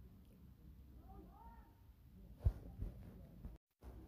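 A cat meowing faintly, a couple of short rising-and-falling calls about a second in, followed by a single sharp knock about halfway through.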